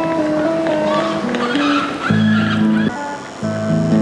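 A Chapman Stick, tapped with both hands and played through a small amplifier, plays a slow melody of held notes; low bass notes join about two seconds in.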